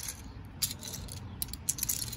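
Small plastic LEGO pieces clicking against each other as a hand pushes them around on a towel: a few light clicks about half a second in and a cluster more in the second half.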